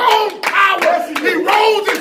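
Fast hand clapping with a man's loud shouting voice over it.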